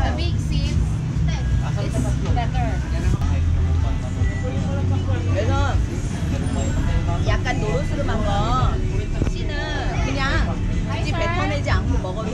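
Women's voices talking in short phrases over a steady low rumble of background noise.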